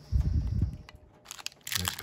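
Low handling thuds against the table, then the foil wrapper of a 2022 Panini Capstone baseball card pack crinkling as it is picked up and torn open, starting about a second and a half in.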